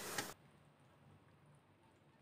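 Near silence: a faint hiss for the first third of a second, then almost nothing.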